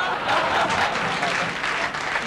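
Studio audience applauding and laughing in reaction to a joke.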